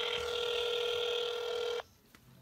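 Ringback tone of an outgoing call played through a smartphone's speakerphone: one steady ring of about two seconds that stops shortly before the end, the sign that the called line is ringing and not yet answered.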